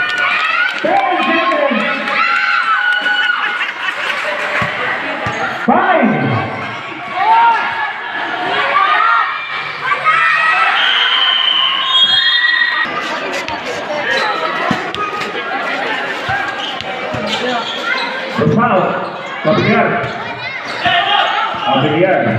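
Spectators and players talking and shouting in a large roofed court, their voices echoing, with a basketball bouncing on the court floor during play.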